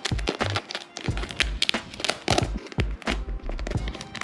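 Background music, with the crinkling and crackling of adhesive vinyl wrap film as it is pressed and folded around a plastic emblem cover. The crackles come as many short irregular clicks.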